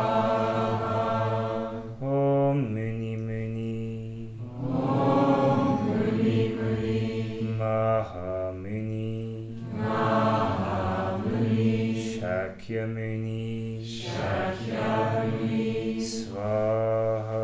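A group of voices chanting a Buddhist mantra together in long, repeating sung phrases over a low held note.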